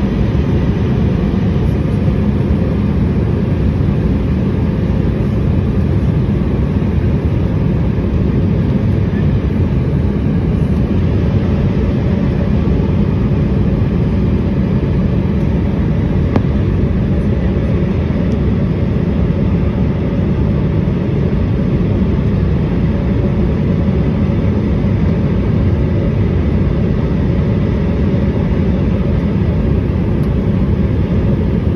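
Jet airliner cabin noise heard from a window seat over the wing: a steady, loud rumble of engines and airflow, deepest in the bass, with faint steady whine tones above it.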